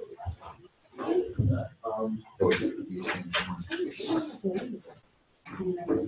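Indistinct speech, talk that the recogniser could not make out, with short pauses near the start and near the end.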